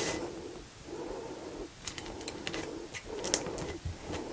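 Quiet hand handling of heat-resistant tape and sublimation paper being smoothed around a mug: a scatter of light clicks and crinkles, with soft breathing between them.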